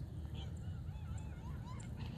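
Geese honking: a quick run of short calls, several a second, growing stronger toward the end.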